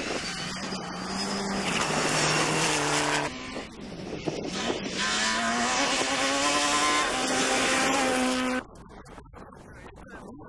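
Two rally cars driven hard on loose gravel, one after the other, with the hiss of tyres and stones under the engines. Each engine note climbs and then steps down at gear changes. The sound cuts off suddenly near the end.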